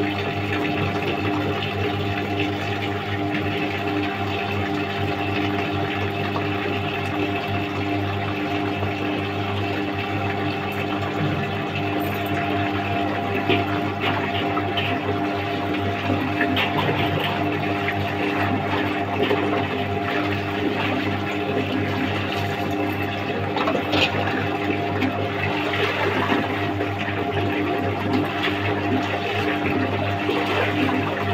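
Water running from a tap and splashing as clothes are rinsed by hand, over a steady electric motor hum that does not change pitch.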